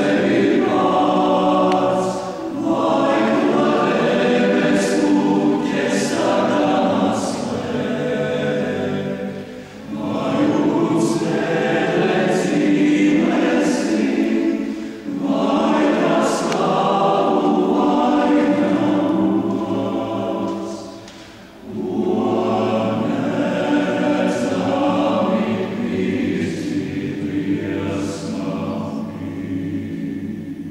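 Choir singing in long phrases broken by short pauses for breath, the longest gap about three-quarters of the way through, with crisp 's' consonants sung together.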